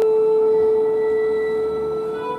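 A fiddle holding one long bowed note, steady in pitch and slowly getting quieter.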